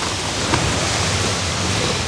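Wind blowing across the microphone: a steady rushing noise with a low rumble.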